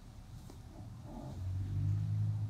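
Low engine rumble of a passing motor vehicle, swelling about a second and a half in.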